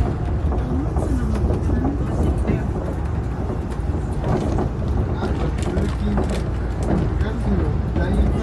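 Suspended monorail car running along its track, heard from inside the car as a steady low rumble, with people's voices talking over it.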